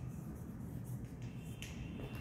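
Chalk on a blackboard: a few faint, short scratching strokes and taps as a line of writing is finished, over a low steady room hum.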